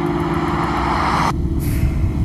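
Car passing with a rush of tyre and engine noise. Just over a second in, the sound cuts abruptly to a low, steady rumble of the car heard from inside the cabin.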